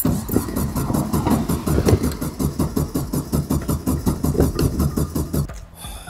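A 1970s VW Beetle's air-cooled flat-four engine is cranked on the starter with a steady, even chug for about five seconds and does not catch. It stops abruptly. The engine is not getting fuel: a cracked fuel line has been leaking it away.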